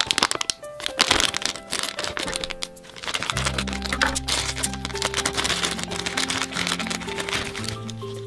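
A foil blind bag crinkling and crackling as hands tear it open and rummage inside it, with many quick crackles. Background music plays under it, fuller from about three seconds in.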